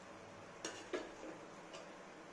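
Kajada dough balls deep-frying in hot oil in an aluminium pot: a faint steady sizzle with a few sharp pops and clicks, the two loudest about two-thirds of a second and a second in.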